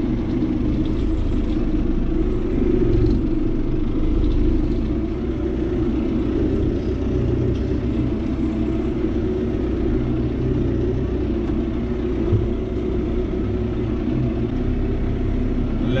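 John Deere 5070M tractor's four-cylinder diesel engine, heard from inside the cab, running steadily at low revs while pulling a mounted field sprayer.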